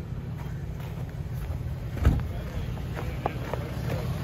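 A vehicle's engine running with a steady low rumble, and a single thump about halfway through.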